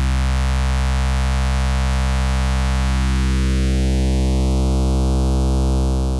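A sustained low synthesizer note, rich in harmonics, played through a Doepfer A-106-6 XP VCF in its two-pole notch mode with the resonance turned down. The cutoff is swept by hand, carving a hole in the harmonics: the notch sits low through the first half, then glides upward about three seconds in and settles higher.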